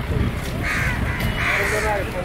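A crow cawing twice, two short harsh calls about a second apart, over background voices.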